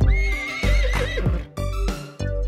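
A horse's whinny, one wavering high call about a second long, over a children's song backing track with a steady beat.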